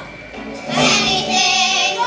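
Children singing a show tune with musical accompaniment, the voices swelling louder and fuller partway through.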